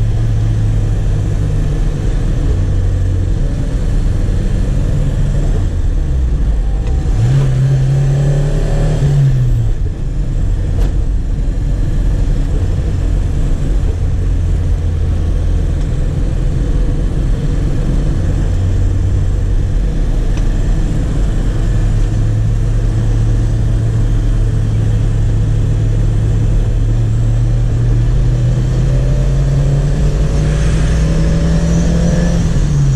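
1989 Chevrolet Chevette 1.6 SL's four-cylinder engine heard from inside the cabin on the move. Its pitch rises from about seven to nine seconds in, falls sharply near ten seconds, then climbs steadily again over the last ten seconds.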